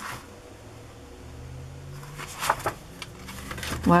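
Stiff paper recipe cards being handled and laid down: a few short rustles and flicks of card stock, a small cluster of them a little past halfway, over a faint low steady hum.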